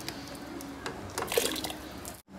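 Cubed raw potatoes tipped from a bowl, plopping and splashing into a pot of hot chicken broth in a quick cluster in the second half, after a couple of small clicks.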